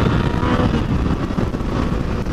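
Wind rushing over the microphone of a riding motorcycle, a dense steady roar, with the engine faintly underneath.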